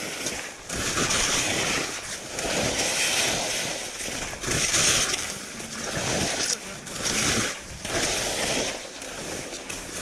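Skis hissing and scraping over packed snow through a series of turns, the sound swelling with each turn about once a second, with wind rumbling on the microphone.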